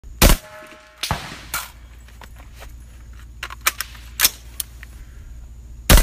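AR-15 carbine shots: a loud crack just after the start and another at the very end, with several fainter sharp cracks in between.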